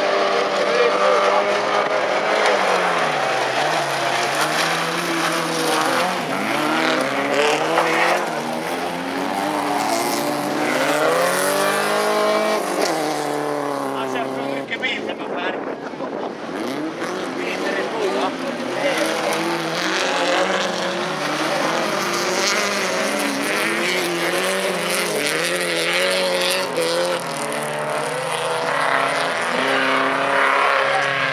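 Several folkrace cars racing on a gravel track, their engines revving up and down as they accelerate and lift through the corners, over the noise of tyres on gravel.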